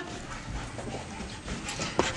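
A dog moving about on a carpeted floor: faint, irregular patter of its steps, with no barking or voice.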